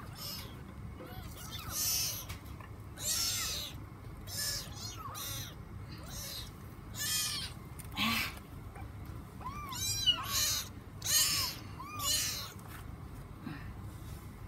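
A kitten mewing in short, high calls that bunch together about ten seconds in. Short bursts of hissy noise come and go between the calls.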